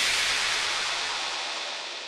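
A hissing wash of white noise, the electronic tail at the end of a dance remix, fading steadily away with no beat under it.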